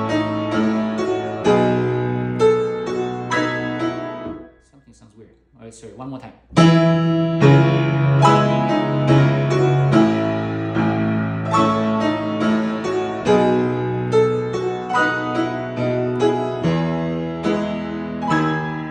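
Grand piano played in chords, with held bass notes under a melody. The playing breaks off about four seconds in for roughly two seconds, then comes back louder and carries on.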